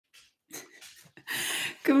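A dog sniffing and breathing close to the microphone: a few short sniffs, then a longer, louder breath about a second in.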